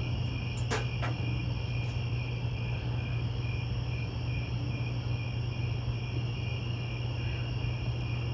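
Crickets chirping: one in a steady, even pulse while others trill continuously at a higher pitch, over a steady low hum. A single faint click comes under a second in.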